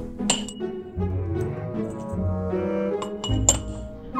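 Background music with sustained notes, joined by sharp metallic clinks. The first clink comes about a third of a second in and a couple more come near the end, from a silver serving cloche being set down on its platter amid the tableware.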